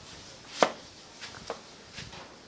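Large knife slicing through a green-skinned vegetable and striking a round wooden chopping block: three strokes, a sharp loud one just over half a second in, then two lighter ones about a second later.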